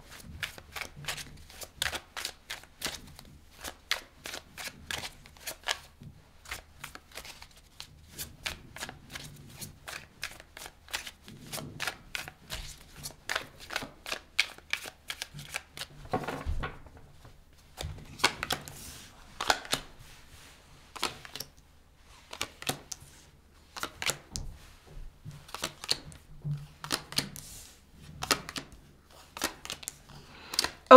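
A deck of tarot cards being shuffled by hand: quick patters of small card clicks and riffles in irregular runs, with short pauses between them. Later on the cards are dealt out onto a marble tabletop.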